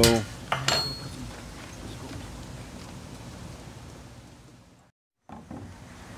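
A short, light metallic clink with a brief ring about half a second in, then faint background that drops out completely for a moment near the end, where the recording is cut.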